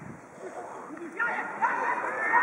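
Shouting voices of rugby players and spectators, starting suddenly a little over a second in after a quieter stretch of low crowd hubbub.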